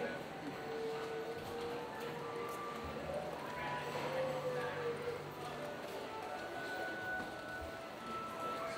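Ambience of a busy walkway: people talking in the background and music with held notes that change every second or two, with footsteps on the hard floor.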